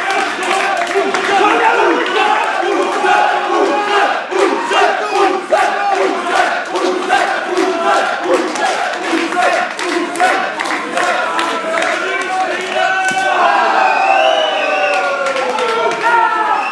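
Wrestling crowd chanting in unison with steady rhythmic clapping, about three claps a second; in the last few seconds the chant breaks into louder excited shouting and cheering.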